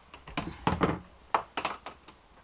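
A string of irregular light clicks and taps from a handheld multimeter and its test leads being handled over a plastic tray.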